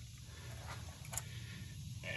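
Faint light click about a second in as the top of an Autolite 2150 two-barrel carburetor is lifted off its body, over a low steady hum.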